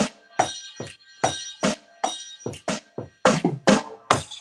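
Hand drum played in a loose groove, two or three sharp strikes a second, each ringing briefly.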